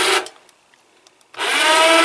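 Electric winch motors of a homemade exoskeleton running in two short bursts, driving the suit's legs one at a time. The first run cuts off about a quarter-second in; after about a second of quiet a second, higher-pitched run starts and goes on to the end.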